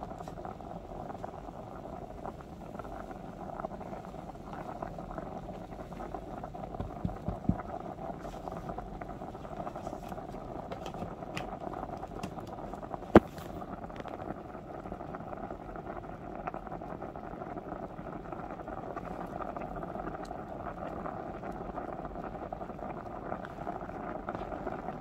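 Water and grains boiling hard with foam in a DASH DMC100WH electric hot pot: a steady bubbling rumble. A few small knocks come about seven seconds in, and one sharp click about thirteen seconds in.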